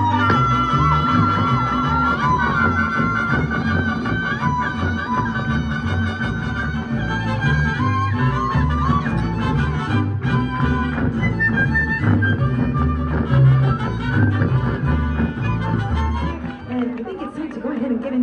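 Mariachi band playing live: violins and trumpets over guitars and a rhythmic bass line. The music stops near the end.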